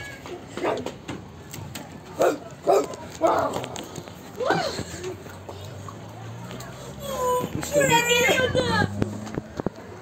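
Children's voices calling out in short snatches, then a longer, high, wavering shout about seven seconds in.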